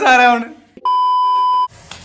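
A single steady, high-pitched beep just under a second long, cutting in and out abruptly against a muted gap: an edited-in censor bleep covering a word.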